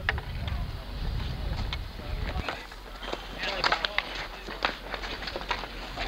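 Street hockey play on asphalt: a string of sharp clacks from sticks and the ball on the pavement in the second half, with players' voices calling out.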